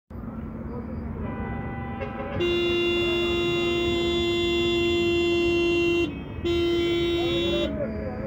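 Vehicle horn sounding two long steady blasts in street traffic: the first starts about two and a half seconds in and is held for about three and a half seconds, the second follows after a short break and lasts about a second.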